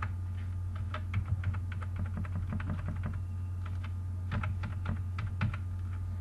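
Computer keyboard keys clicking in quick, irregular strokes as copied text is pasted over and over into a text box, over a steady low electrical hum.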